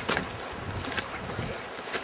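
River water running over a gravel bed: a steady, soft rushing hiss, with a few faint clicks about a second apart.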